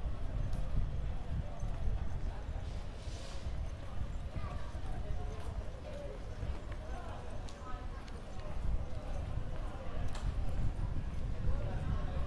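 Footsteps of someone walking on stone paving, a steady stride of shoe strikes, with indistinct voices in the background.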